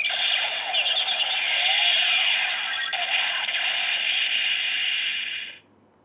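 Electronic finishing-move sound effect from a Kamen Rider Ex-Aid DX Gamer Driver toy's small speaker, triggered by its finisher slot holder. It is thin and high-pitched with little bass, runs steadily, and cuts off suddenly near the end.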